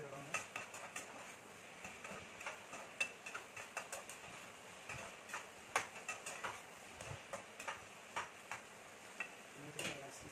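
Metal spatula scraping and clinking against a frying pan in irregular strokes as food is stir-fried, over a faint steady hiss.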